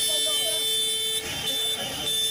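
A vehicle horn held down in a long steady blast, breaking off briefly a little past a second in and then sounding again, with people shouting over it.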